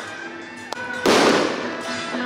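A loud firecracker bang about a second in, over steady instrumental music.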